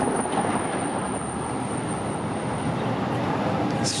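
Steady city street traffic noise, with a thin high-pitched whine that fades out a little under three seconds in.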